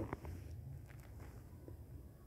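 Quiet room noise: a faint low hum with a few small, soft clicks.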